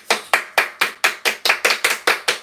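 Hand clapping in a quick, even rhythm, about five claps a second, a short round of applause.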